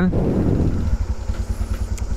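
Italika V200 motorcycle engine running low and steady as the bike rolls slowly, heard up close from a camera mounted on the bike.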